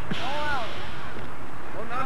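Players shouting across an open softball field: one drawn-out call in the first second, then more shouts starting near the end, over a steady background noise.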